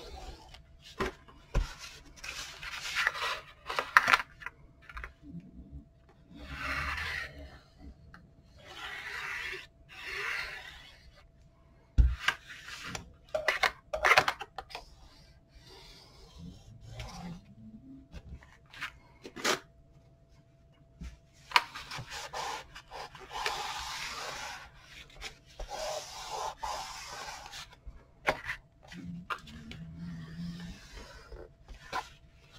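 A small white craft tool rubbing back and forth over cardstock in scraping strokes of a second or two, pressing glue into the folds of a pleated paper spine, with scattered light taps and clicks.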